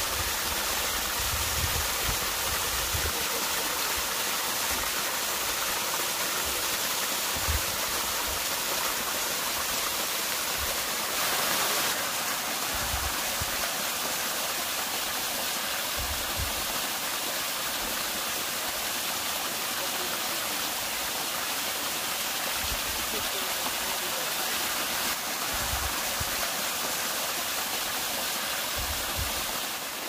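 Small waterfall splashing down a mossy rock face: a steady rush of falling water, with short low rumbles now and then.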